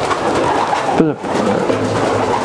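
Racing pigeons in a loft cooing, many at once in a dense, continuous murmur, with one downward-sliding call about a second in.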